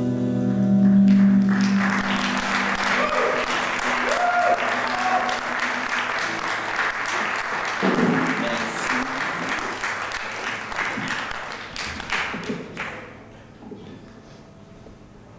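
A live audience applauding after a held organ-like drone fades away in the first couple of seconds. The clapping thins out and dies away about a second before the end.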